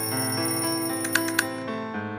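Cheerful children's-song backing music with a cartoon alarm-clock bell sound effect ringing over it, which stops shortly before the end after two sharp clicks.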